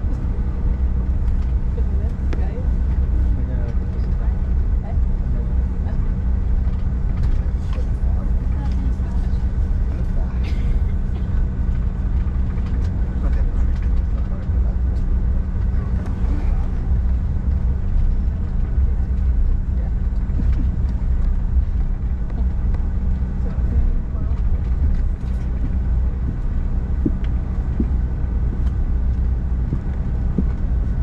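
Cabin noise inside a Bombardier CRJ1000 regional jet taxiing: a steady low rumble with the constant hum and whine of its rear-mounted turbofan engines at taxi power.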